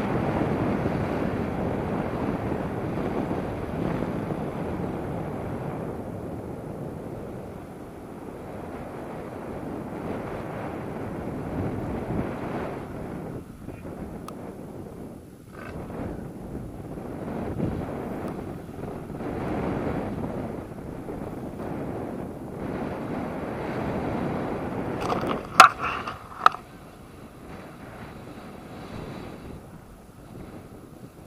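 Wind buffeting the camera microphone of a tandem paraglider in flight: a rushing noise that swells and fades in gusts. Two short, sharp sounds about four seconds before the end are the loudest thing.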